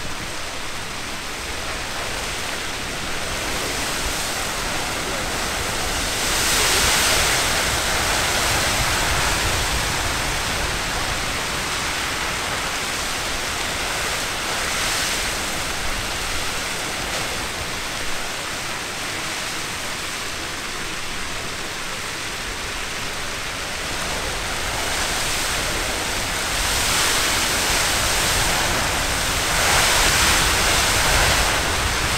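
Castle Geyser erupting in its water phase: a steady rushing hiss of water and steam jetting from the cone, with water running down its sides. The rush swells louder about six seconds in and again near the end.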